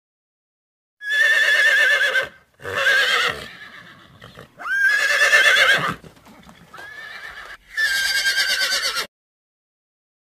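Horse neighing: five whinnies in a row with a quavering, shaking pitch, the fourth quieter than the rest. The calls start about a second in and stop abruptly about nine seconds in.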